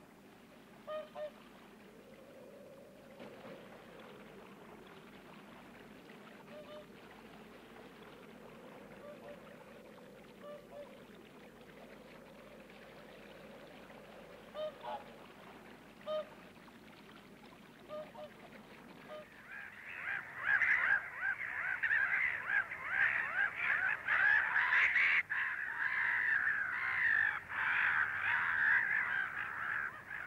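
Swans calling on open water: a few faint honks spaced out at first, then, about two-thirds of the way in, a loud dense chorus of many birds honking together.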